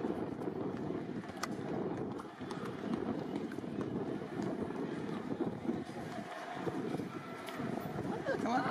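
Indistinct murmur of a group of people talking close by, no single voice standing out, with a few scattered sharp clicks.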